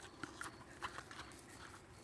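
Faint, scattered clicks and light rustling as small plastic toy figures are handled and moved through clover.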